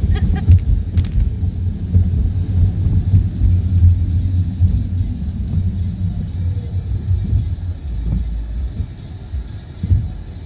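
Steady low road and engine rumble heard inside a moving car's cabin, easing off somewhat near the end as the car slows.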